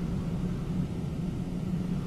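Steady low rumble with a faint hiss underneath, unchanging throughout.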